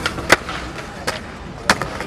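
Skateboard wheels rolling on concrete, broken by three sharp wooden clacks from the board being popped and landing during a flip trick. The first clack is the loudest.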